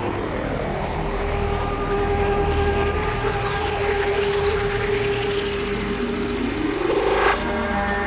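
Psybient downtempo electronic music: held synth tones under slow sweeping whooshes, with a swell that rises and cuts off suddenly about seven seconds in.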